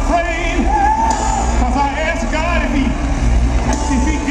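Live R&B performance: a male singer's voice into a handheld microphone over a full band with a heavy, steady bass, heard through the PA from out in the audience.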